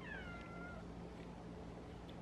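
A young Siberian cat meowing once: a short, faint, high call that falls in pitch and fades out within the first second.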